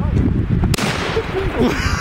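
A single shotgun shot about three-quarters of a second in, ringing out briefly over wind rumble on the microphone, followed by laughter.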